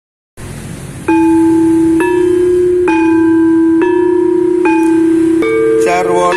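Javanese gamelan metallophone struck about six times, a little under a second apart, alternating between two neighbouring notes that ring on between strikes; near the end more instruments join in as the srepeg piece gets under way.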